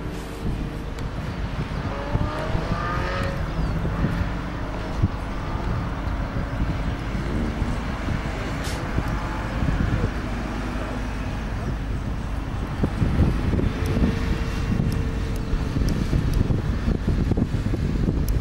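Distant Lamborghini Gallardo V10 engine on track, its note climbing in pitch as it accelerates, heard through heavy wind rumble on the microphone.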